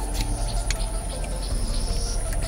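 Light wet clicks and squishes of fingers mashing catfish milt sacs in a small plastic bowl of saline, over a steady high-pitched whine and a low hum.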